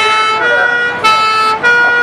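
Fire engine's two-tone horn sounding, switching back and forth between a high and a low note about every half second.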